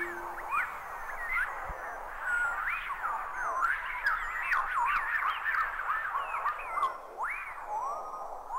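A dense layer of quick chirping calls, each rising and falling in pitch, like a frog chorus or jungle-night sound effect. It is laid under the last low notes of a hip-hop beat, which stop just after the start, with one soft low thump about two seconds in.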